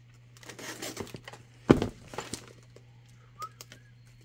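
Small cardboard box being slit open with a folding knife: scattered scraping and rustling of the blade through packing tape and cardboard, with one sharp knock a little under halfway in.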